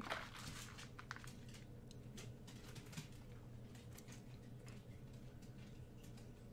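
Quiet room tone: a steady low hum with a few faint scattered clicks and rustles, a slightly sharper tick about a second in and another near the middle.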